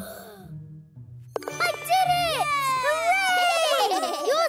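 Cartoon characters' voices whooping and squealing in swooping rising-and-falling cries over children's background music. They start loudly with a short knock about a second and a half in, after a quieter musical stretch.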